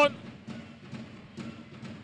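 Low basketball-arena ambience during a stoppage in play, with faint music and drumming under the murmur of the hall.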